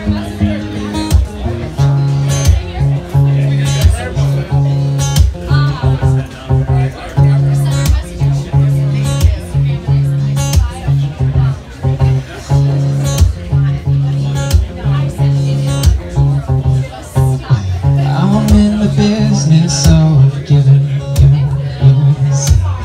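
Acoustic guitar strummed in a steady rhythm over a didgeridoo drone played hands-free from a stand; the low drone pulses on and off with the beat. Near the end the drone jumps up to a higher note.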